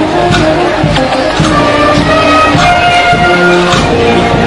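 A band playing a processional march: brass holding long notes that step from one pitch to the next, with drum strokes underneath.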